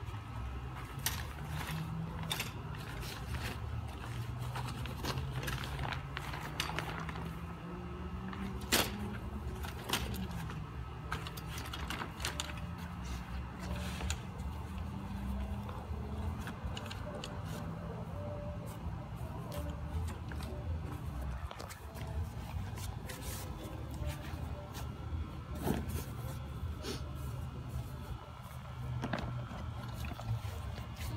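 Steel frame of a folding camp cot clicking and rattling as it is unfolded and its legs are set in place, with one sharp click about nine seconds in, over a steady low drone.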